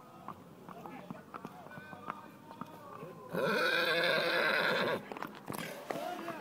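Horse's hooves clip-clopping on an asphalt road, and a loud whinny about three seconds in, lasting under two seconds.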